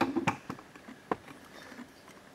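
Handling noise from a stainless steel water bottle being turned over in the hand: four light clicks and taps in the first second or so, the first the loudest.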